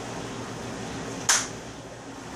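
One short, sharp crack about a second in: a hard-boiled egg's shell smashed against the top of a man's head, over a steady low room hum.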